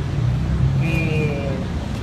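Steady low rumble of outdoor background noise, with a faint distant voice about a second in.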